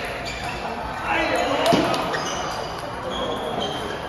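Table tennis ball clicking sharply several times off paddles and the table during a rally, over voices in a large, echoing hall.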